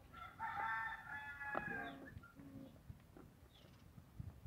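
A rooster crowing once, faint, a long held call of about two seconds that drops away at the end.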